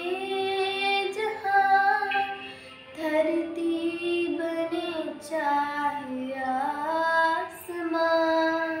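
A young girl singing a Hindi devotional bhajan solo, her voice gliding through long held, ornamented notes. She breaks briefly for breath about three seconds in and again near the end.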